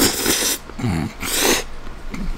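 Hot spaghetti noodles slurped loudly, close to the microphone, in two long slurps with a short low grunt between them.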